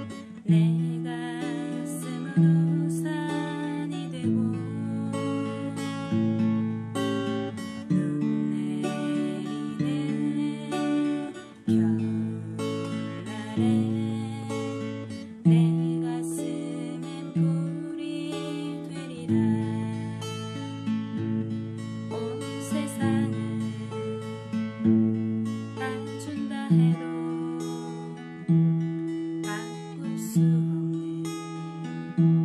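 Steel-string acoustic guitar, capoed at the second fret, fingerpicked in a slow rock arpeggio pattern with chords in G shapes: a bass note on the root, then plucked upper strings ringing on, the bass changing every second or two.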